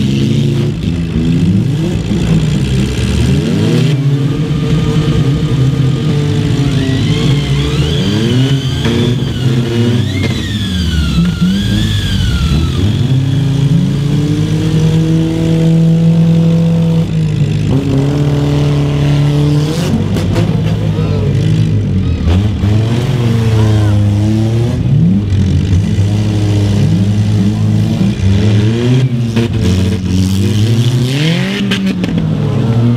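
Engines of several stock compact demolition-derby cars running and revving at once, their pitches repeatedly rising and falling as the cars drive and ram each other.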